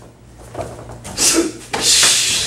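Martial arts uniforms rustling and swishing as a punch is thrown and blocked, in two quick swishes about a second in and near the end.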